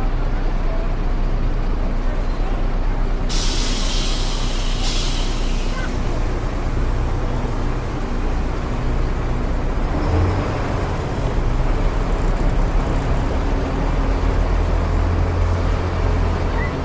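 Tour bus engine running at low speed, with a burst of air-brake hiss about three seconds in that lasts two seconds. From about ten seconds in the engine's low hum grows louder.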